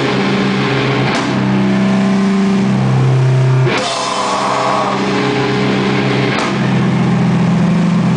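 Live rock duo of electric guitar and drum kit playing a slow, heavy passage. Sustained guitar chords ring for one to three seconds each, and a cymbal crash lands on the chord changes about a second in, near the middle and about three-quarters of the way through.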